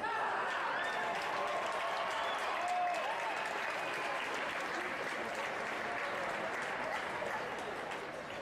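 Crowd applauding and cheering after a touch is scored in a foil fencing bout. It starts suddenly and tails off near the end.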